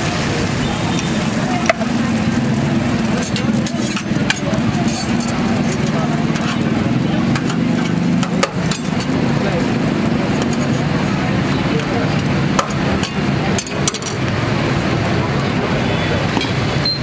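An egg frying on a flat steel griddle, sizzling steadily, over a steady low drone of street traffic, with a few sharp clicks.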